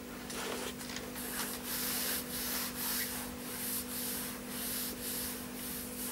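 Repeated rubbing strokes of satin gloves over nylon stockings, about two a second, over a steady low hum.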